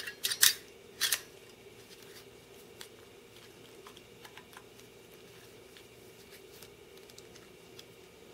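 Sharp clicks of a plastic steering-wheel phone-holder clip being handled and adjusted: about four in the first second or so, then only faint small ticks of handling.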